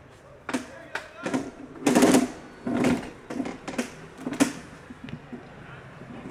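Men's voices shouting short calls, a string of loud bursts for the first few seconds with the loudest around two seconds in.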